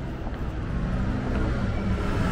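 Road traffic passing close by: the low rumble of a vehicle engine, growing louder toward the end.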